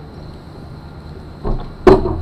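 A low steady hum, then a soft thump and a loud, sharp knock near the end.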